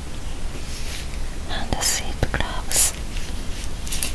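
A woman whispering in short breathy phrases, with a few soft clicks and rubbing from latex-gloved hands moving together.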